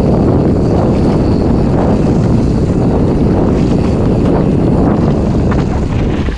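Maxxis knobby mountain-bike tyres rolling fast over a dirt forest trail, a steady loud rumble mixed with wind buffeting the microphone.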